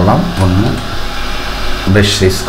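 Speech only: a voice talking in short phrases at the start and again at the end, over a steady low hum.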